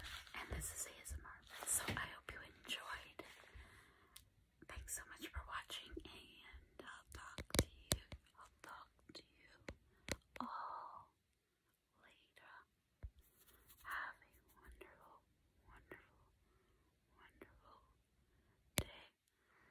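Soft close-up whispering, broken by scattered sharp clicks and taps from fingers handling the camera close to the microphone.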